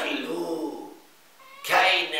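A man's voice drawn out into a wavering, pitched vocal sound for under a second, then a short pause and speech starting again near the end.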